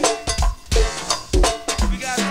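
Live go-go band percussion groove: drum kit with bass drum and snare keeping a steady beat, with cowbell on top.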